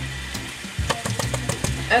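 Ground beef sizzling as it browns in a pan, with a few light taps and clicks about a second in.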